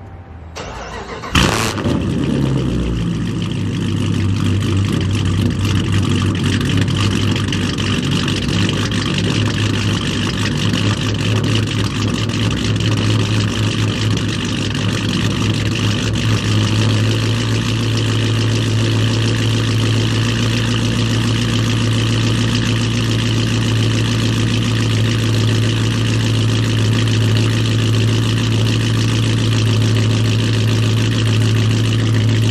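Dodge Charger's V8 cranking and firing about a second and a half in with a sudden loud burst, then settling into a steady, loud idle. It is a cold start after the car has sat unused for a while, the engine still warming up.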